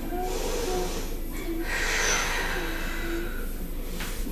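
A person breathing audibly during a yoga hold: one long breath beginning about one and a half seconds in, over a softer breath at the start.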